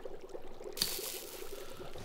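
A small plop, then a sudden steady fizzing hiss as an object is dropped into a fog-filled barrel of 'acid', sounding like something being dissolved.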